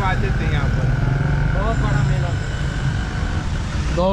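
Loud, steady construction noise: a continuous low rumble with a steady high tone on top, drowning out a man's speech, which comes through only faintly.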